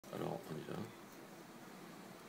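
A voice speaks a short word or two during the first second, then quiet room tone.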